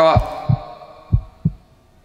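Heartbeat sound effect: deep double thumps, lub-dub, about once a second, twice in a row.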